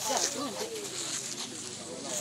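Onlookers' voices, indistinct calling and chatter, strongest in the first second and fading after.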